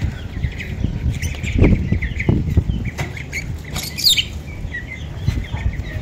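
Young ducks and chicks cheeping in scattered small chirps, with one high falling peep about four seconds in, over a low rumble.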